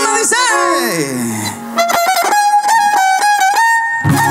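Live huasteco string trio playing: violin with small and large strummed guitars. It opens on a phrase that glides downward, then the violin holds a long high note over steady strummed chords.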